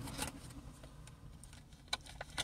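Quiet rustling and a few small clicks as a small earbud box and its packaging are handled, with one sharper click near the end, over a low steady hum.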